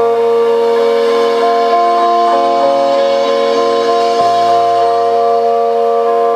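Loud live band music: long, held droning chords with no clear beat, shifting to new notes a couple of times.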